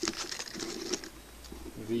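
Tabletop handling noises as a hand takes hold of a dry-cured sausage to cut it: a sharp click at the start, then light scraping and rustling.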